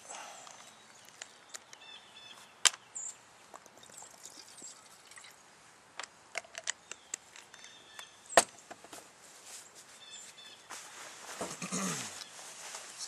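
Light clicks and taps of small cook-kit pieces being handled on a table, with two sharper knocks, one early and one past the middle.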